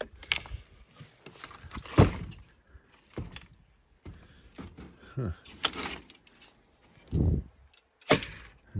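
An RV entry door and its screen door being opened and handled: latch clicks, rattling of the metal hardware, and a sharp knock about two seconds in.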